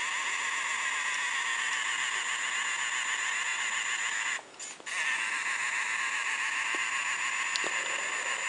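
A hand-held 3D pen's small filament-feed motor whirring steadily as it pushes out molten plastic to weld the joints of a plastic frame. It stops for about half a second in the middle, then starts again.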